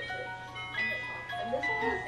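A jack-in-the-box's little music box plinking out its tune one note at a time as its crank is turned, before the lid springs open.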